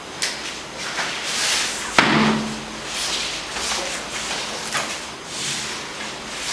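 Two grapplers in cotton gis rolling and scrambling on floor mats: fabric rustling and bodies shifting, with one sharp thud on the mat about two seconds in.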